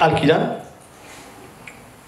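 A man's voice preaching into a handheld microphone, breaking off about half a second in. A pause of low room tone follows, with one faint click near the middle.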